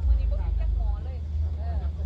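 Low, steady roar of an LPG gas ring burner running with the pot on it, with faint voices in the background.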